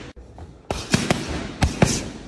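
Boxing gloves smacking into leather focus mitts: five sharp smacks in quick combinations, a group of three starting about two-thirds of a second in, then two more near the end, each with a short echo.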